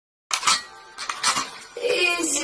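Sound effects of an animated logo intro: after silence they start suddenly with a few sharp, metallic-sounding hits that ring on, and a pitched tone sets in near the end.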